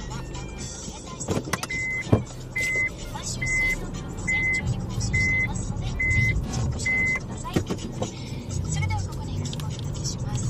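A car's reverse warning buzzer beeping seven times at an even pace, about one beep every 0.8 s, over the low running of the engine. A few sharp knocks come about a second and a half in, about two seconds in, and again after seven and a half seconds.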